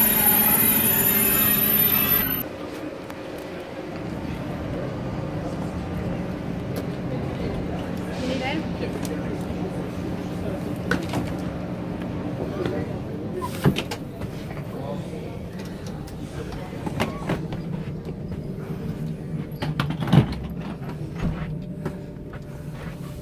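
A standing Thalys high-speed train on the platform, its equipment giving a steady hum with high whines; about two seconds in this gives way to the inside of the carriage, a steady low hum of the train's onboard equipment. Scattered knocks and bumps of movement down the aisle run over it, with a sharp thump about two-thirds through and another near the end.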